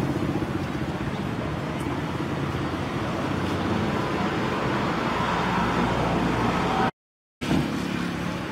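Steady noise of motor traffic with a vehicle engine running, broken by a sudden half-second gap of silence about seven seconds in.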